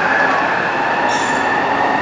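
Vancouver SkyTrain train pulling away from the platform: a steady running noise with a held tone, joined about a second in by thin, high whistling tones.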